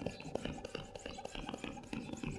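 Inflated latex balloon rubbing and brushing against other latex balloons, a quick, irregular scratching and rustling.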